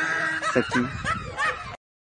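A man laughing in a string of short chuckles, cut off abruptly near the end.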